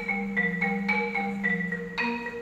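Solo concert marimba played with mallets: a melody of struck wooden-bar notes, about four a second, each ringing briefly over a sustained low note.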